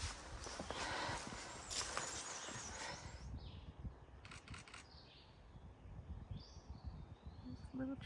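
Footsteps and leaf rustle on a forest trail for the first few seconds, then quiet woods with several short, high chirps at irregular intervals.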